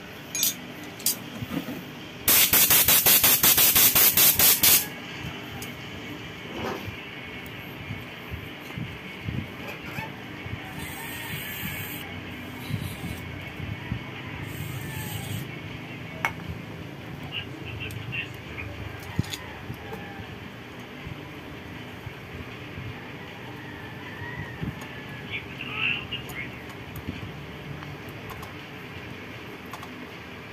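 Hand tools working on a motorcycle's crankcase cover plugs: scattered metal clicks and clinks of a wrench on the bolts, with a loud burst of rapid clicking lasting about two and a half seconds near the start and two brief hisses in the middle.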